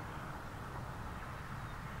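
Distant LMS Black Five 4-6-0 steam locomotive 44932 working a train, heard as a steady rumble and hiss without distinct beats, mixed with wind noise on the microphone.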